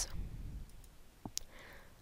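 A computer mouse button clicking once, sharp and short, about a second and a half in, over faint background noise.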